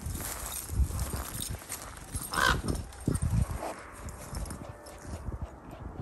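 Common raven giving a loud croaking call about two and a half seconds in, with a fainter call about a second later, over low irregular thumps of footsteps.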